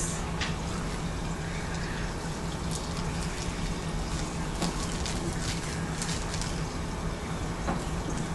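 Faint crinkling and small clicks of a plastic-wrapped glitter packet being handled, scattered through the middle, over a steady low hum and hiss.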